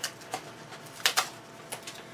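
Paper rustling and crinkling in the hands as the paper covering of a paper cup is pulled open, in several short crackles, the loudest a pair about a second in.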